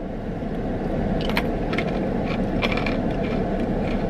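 Steady low hum inside a parked car, with a few light crunching clicks from chewing hard, crunchy coated peas.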